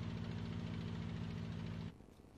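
Piston engines of a twin-engine propeller airliner running with a steady low drone, cutting off suddenly near the end.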